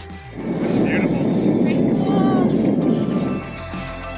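Indian Roadmaster V-twin motorcycle engine and exhaust running hard, loud for about three seconds before dropping away, over background music.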